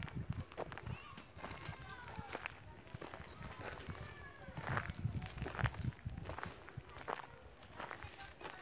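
Footsteps crunching unevenly on dry dirt ground, with a few bird chirps, one high falling chirp about halfway through.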